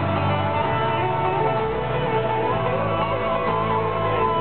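Live music on strummed acoustic guitars, a full steady band sound. About halfway in, a melody line rises and wavers over the guitars.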